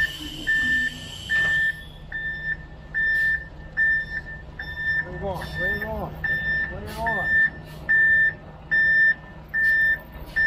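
Concrete mixer truck backing up: its reverse alarm beeping steadily, about three beeps every two seconds, over the low running of its diesel engine. A short hiss sounds right at the start.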